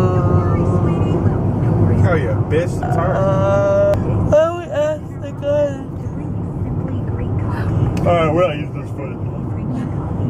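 Steady low road and engine rumble inside a car's cabin at highway speed. Over it, a woman's voice makes wordless long held notes at a few points.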